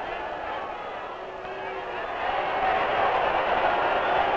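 Arena crowd noise from a wrestling audience: many voices murmuring and calling out, growing louder through the second half. It is heard through a thin, band-limited 1950s optical film soundtrack.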